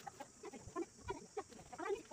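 Chickens clucking: a run of short, irregular calls.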